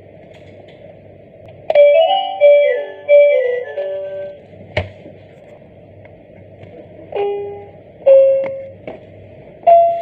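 Plastic electronic activity cube toy playing a short electronic tune of quick stepped notes, then a single click, then separate single electronic notes about a second apart from its piano keys.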